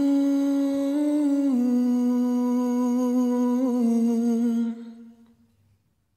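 A man's voice singing one long wordless "ooh", held with a couple of small pitch steps, fading out about five seconds in.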